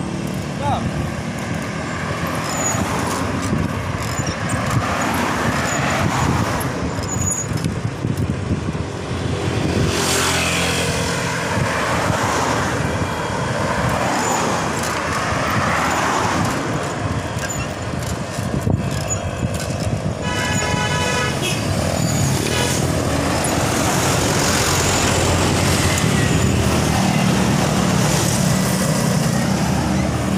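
Road traffic heard from a moving bicycle: cars and motorcycles running past over a constant rush of noise, with a brief rapid string of short high-pitched beeps about two-thirds of the way through.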